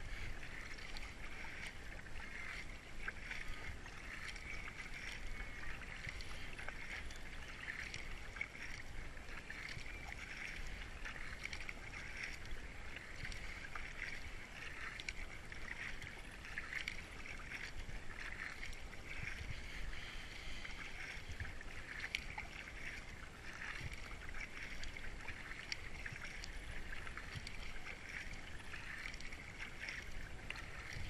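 A racing kayak paddled steadily on flat river water, the double-bladed paddle dipping and splashing water alongside the hull in a continuous wash with small drips and ticks.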